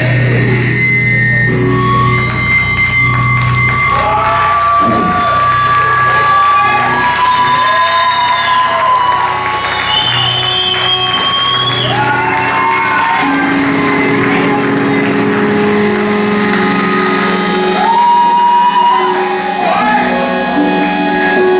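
Live doom-metal band's drumless ambient outro: loud held droning notes with several tones sliding up and down in pitch, and a deep low drone that fades out about two thirds of the way through.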